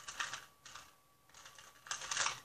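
Ghost Hand 2x2 plastic speed cube being turned by hand, its layers clicking in a few short bursts of quick clicks.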